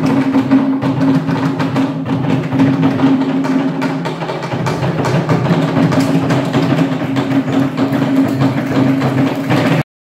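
Pacific island dance music of drums and sharp wooden knocks in a fast, steady beat over a sustained low tone; it cuts off suddenly just before the end.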